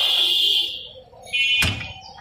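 A high-pitched ringing tone sounds through the first second. A single sharp chop of a butcher's cleaver into the wooden block follows about one and a half seconds in.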